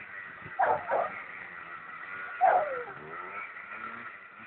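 Yamaha Blaster two-stroke quad engine running far off as a steady high drone. Three short, loud calls that fall in pitch cut across it, two close together about half a second in and one about two and a half seconds in.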